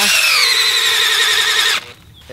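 Cordless drill boring a sap tap hole into a birch trunk. The motor whine rises as it spins up, holds steady under load, and stops just before the end.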